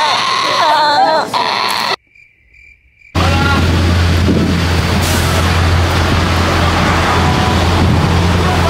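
Brief voices, a second of near silence at a cut, then loud steady street noise: a low drone under an even rushing hiss, from traffic along the road with wind on the microphone.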